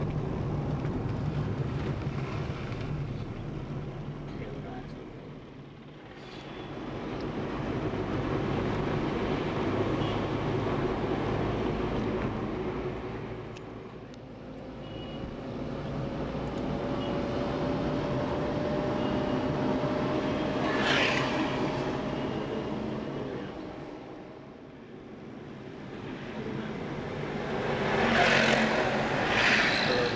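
Engine and road noise from inside a moving vehicle, swelling and easing several times as it drives along a winding road, with a faint rising whine in the middle. Louder rushes of noise come about two-thirds of the way through and again near the end.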